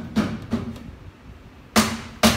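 A few sharp clicks at a solar pump inverter's keypad as it powers up, the two loudest near the end.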